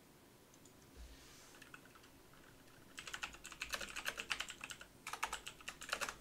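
Typing on a computer keyboard: rapid key clicks in two runs, one starting about three seconds in and lasting nearly two seconds, the other following a moment later near the end.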